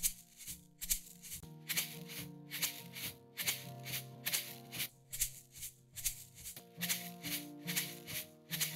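Shaker playing a steady rhythm of about three strokes a second in a folk song mix, over sustained pitched backing instruments. It is played back with and without its processing for comparison; the processing is meant to soften it and push it back in the mix.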